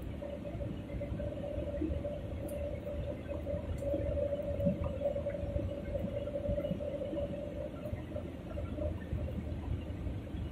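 Airliner cabin noise in flight: a steady low rumble of engines and airflow with a constant droning hum running through it.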